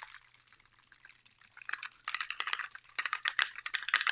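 A Distress Mica Stain spray bottle being shaken hard: its contents rattle in quick clicks, starting about a second and a half in.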